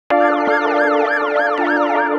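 Opening of the show's intro music: a held synth chord with a siren-like pitch sweep rising and falling about three times a second on top, cutting in suddenly.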